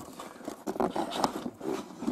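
Cardboard packaging being handled: irregular rustling and scraping of the box against hands and table, with a few small knocks.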